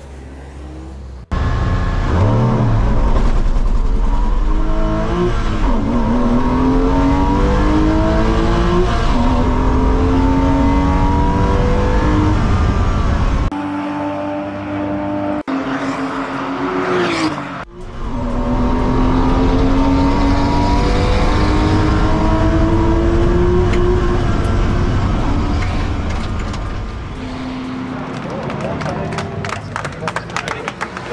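Porsche Boxster S race car's 3.2-litre flat-six engine heard from inside the cabin, accelerating hard through the gears, its pitch climbing and dropping back at each upshift. Midway there is a short quieter break with a quick rising sweep, then the engine pulls through the gears again and eases off near the end.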